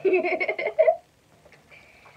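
A girl laughing, a quick run of giggles lasting about a second.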